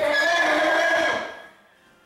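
A horse neighing once, a single loud call of about a second and a half that then fades away.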